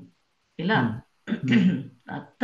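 Speech: two short spoken phrases with a pause between them.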